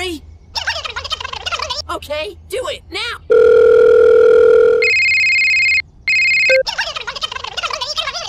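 Telephone sound effect: a steady dial-tone hum for about a second and a half, then a higher electronic ring in two short bursts. Fast gibberish cartoon voices chatter before and after it.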